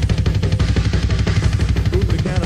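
Live metal band playing at full tilt, driven by a rapid, even kick-drum pattern of about a dozen beats a second, from an early live recording dubbed to cassette.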